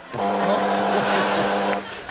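A steady, even-pitched buzz lasting about a second and a half, starting and cutting off abruptly, over faint audience laughter.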